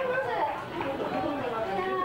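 Several young women's voices talking over one another in lively chatter.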